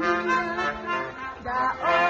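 Brass band playing a slow St. Martin's procession song, with long held notes and the tune moving on to new notes about one and a half seconds in.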